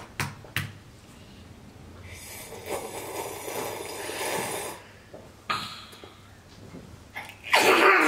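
Loud slurping from a mug: a long noisy draw lasting about three seconds, then a short second slurp. Laughter breaks out near the end.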